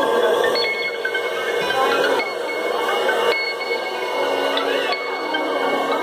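Live band playing a slow instrumental passage of sustained, ringing notes with slow swells and gliding tones.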